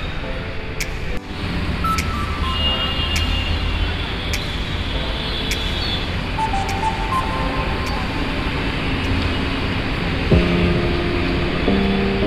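Steady city traffic rumble from cars and auto-rickshaws on a busy road, with music playing over it; a louder run of tones comes in near the end.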